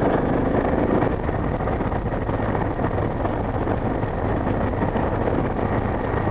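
Dual-sport motorcycle riding steadily along a gravel road: a constant low engine hum under a steady rush of wind and road noise on the helmet-camera microphone.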